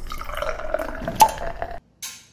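Intro sound effect for an animated channel logo: a short, liquid-sounding swell like water dripping, with one sharp pop a little past halfway, cutting off shortly before the end.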